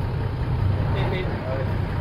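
Bus's diesel engine running at low revs, a steady low drone heard from inside the cab.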